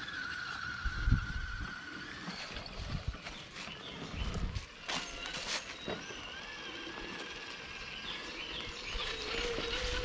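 Electric motor and gear whine of an RC scale crawler truck, shifting in pitch as it drives, with several sharp knocks and clatter as its tyres climb over wooden planks.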